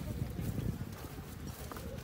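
Faint, soft hoofbeats of a horse being led at a walk on grass, over a low outdoor background.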